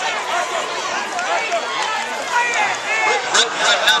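Football crowd yelling and cheering during a play, many voices overlapping at once, with a few sharp claps or knocks near the end.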